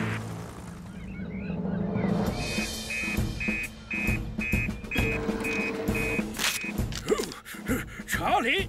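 Cartoon soundtrack music with an electronic alert beeping over it: short high beeps, about two a second, starting a couple of seconds in and stopping near the end.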